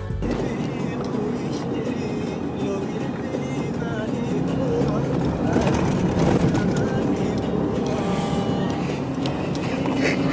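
Four-wheel-drive SUV driving over desert sand dunes, heard from inside the cabin: a steady rumble of engine and tyres on sand.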